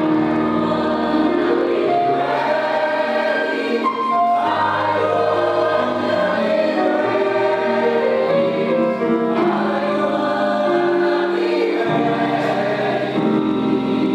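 Mixed choir of women's and men's voices singing in parts, holding long chords, with new phrases starting about four seconds in and again near twelve seconds.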